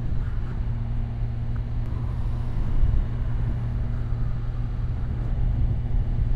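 Kawasaki Ninja 1000SX's inline-four engine running steadily at a constant, moderate cruising speed, with steady road noise.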